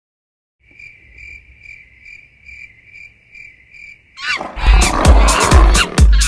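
Cricket-like chirping, a high tone pulsing a little over twice a second. About four seconds in, a loud roar breaks in, and dance music with a heavy bass beat starts under it.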